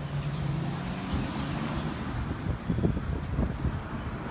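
A motor vehicle on a city street: a steady engine hum, then louder low rumbling in the second half.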